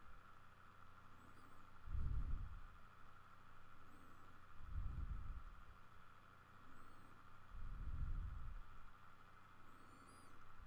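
A person breathing close to a microphone: three faint low puffs about three seconds apart, over a steady faint hum.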